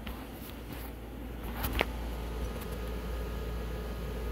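Steady low hum with faint background noise, and a brief rising chirp a little under two seconds in.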